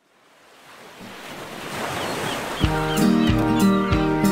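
Sound of surf breaking on a beach, fading in from silence, with a few short high calls over it. About two-thirds of the way through, the song's intro comes in: held chords over a steady beat, roughly one to two beats a second.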